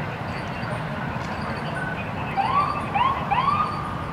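An emergency vehicle's siren gives three short rising whoops, one after another, starting about two and a half seconds in, over a steady low rumble.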